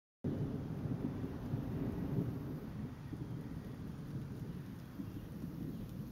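Thunder rolling, a low rumble that is loudest in the first couple of seconds and slowly eases off.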